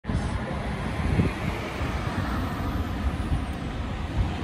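Steady open-air background noise with a low rumble and no distinct events.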